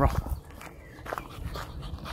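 A dog making a few short sounds, with footsteps.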